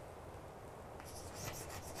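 Chalk writing on a blackboard: a faint run of short strokes that starts about halfway through.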